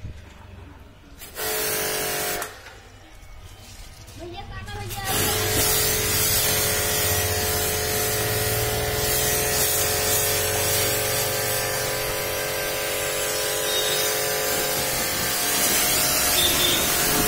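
Pressure washer running: a short burst of spray about a second in, then steady spraying from about five seconds in, a loud hiss of the water jet over the whine of the pump motor, aimed at a car's painted metal body.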